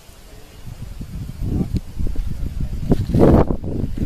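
Low rumble of wind buffeting the microphone, with indistinct voices about three seconds in.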